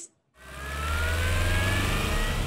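News-broadcast 'breaking news' intro sound effect: after a brief silent gap, a whooshing riser swells in over a deep rumble, with a tone slowly rising in pitch.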